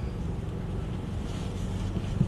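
Steady low background rumble with a faint hiss over it, even throughout, with no distinct events.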